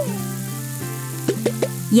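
Vegetables sizzling as they fry in a pan, under light background music.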